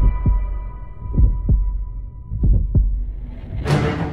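A trailer heartbeat sound effect: three double thumps about a second and a quarter apart, over a faint steady high tone. A louder burst of music comes in near the end.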